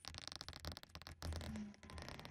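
Faint scratching and light ticking of a stylus writing on a tablet, over a low hum.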